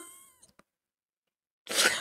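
A woman's high-pitched vocal sound, a laughing squeal, trailing off in the first half second, then complete silence, then a breathy laugh starting near the end.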